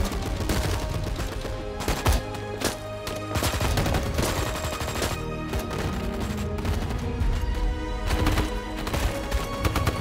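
Battle-scene gunfire, rapid rifle and machine-gun shots in bursts, laid over a film score of sustained tones and a low rumble. The shots are densest in the first few seconds and again near the end.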